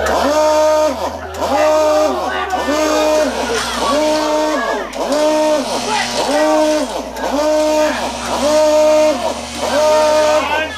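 A voice-like pitched note repeated about once a second, each one rising, holding steady and falling away, over a steady low hum.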